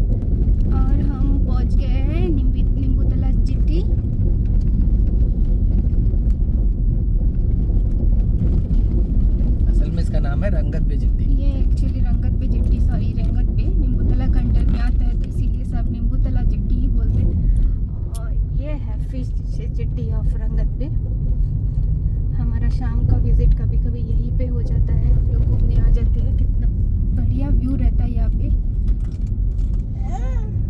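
Steady low rumble of a car driving, heard from inside the cabin: engine and tyre noise on the road, a little quieter from about eighteen seconds in.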